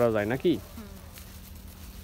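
A voice says a couple of words, then a faint, steady low buzz carries on, as of a flying insect near the microphone.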